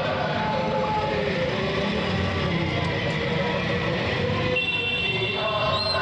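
Street procession sound: a crowd's voices mixed with motorcycle engines running, with music underneath. The sound changes about four and a half seconds in.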